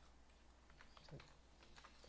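Faint typing on a computer keyboard: a few light, scattered key clicks.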